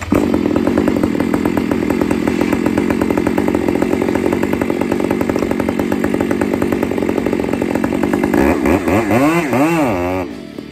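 Gas chainsaw cutting into a spruce trunk, its engine running steadily at full throttle under load. Near the end the engine pitch rises and falls several times as it revs up and down.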